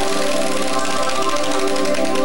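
Game-show prize wheel spinning, its pointer clicking rapidly against the pegs on the rim, over sustained background music.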